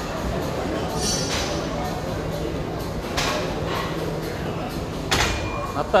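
Gym noise during a barbell-and-burpee workout: a steady background of voices with a few sharp knocks and clanks of barbells and landing feet, about one, three and five seconds in, the last the loudest.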